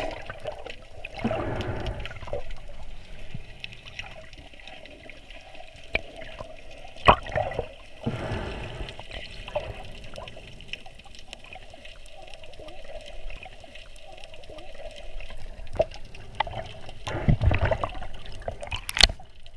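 Muffled underwater sound picked up by a snorkeller's camera: steady water noise with a few swells of bubbling and rushing, and a sharp knock about seven seconds in as the hands handle a plastic bag of peas beside the camera.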